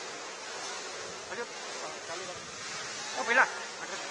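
A steady hiss of background noise with men's voices over it, one calling out loudly about three seconds in.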